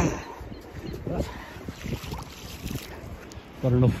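Wind noise rumbling on a handheld phone's microphone, with a few short sounds of a man's voice and speech starting near the end.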